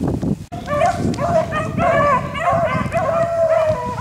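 A pack of beagles baying in long, drawn-out notes, several dogs overlapping, starting about half a second in: the hounds opening on a rabbit they have just jumped.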